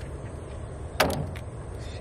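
Steady low background rumble of an open outdoor space, with one sharp click about a second in as a man says a brief word.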